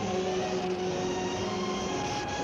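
Cartoon sound effect of a lit dynamite fuse sizzling: a steady hiss that starts just as the fuse catches, over held orchestral notes.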